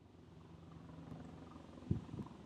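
Steady low outdoor rumble with a faint steady hum, fading in at the start, with one short thump near the end.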